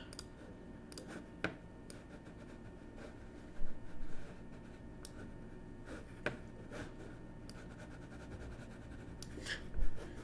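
Computer mouse clicking now and then, a handful of short, sharp clicks spread out, over a low steady room hum. A slightly louder, short rustling burst comes a little under four seconds in.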